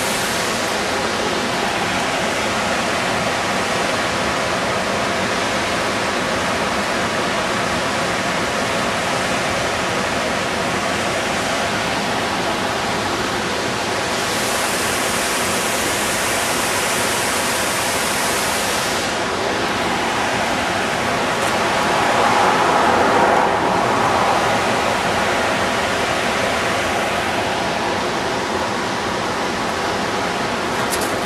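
Small roadside waterfall cascading down a mossy rock face: a steady rush of falling and splashing water, with a brief louder swell about two-thirds of the way through.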